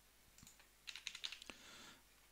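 Faint typing on a computer keyboard: a couple of light taps, then a quick run of keystrokes about a second in as a short search term is typed.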